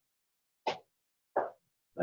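Two brief mouth sounds from a man close to the microphone, each a short pop, under a second apart, with silence around them.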